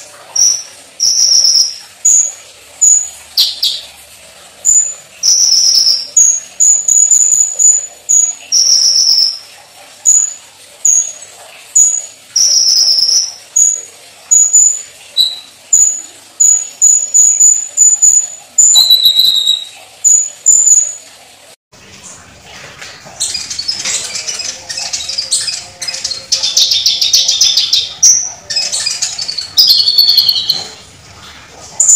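Purple-throated sunbird (kolibri ninja) calling loudly: a long series of short, sharp, high notes, one every half second or so. About two-thirds of the way through they break off suddenly and a denser run of rapid high twittering song follows.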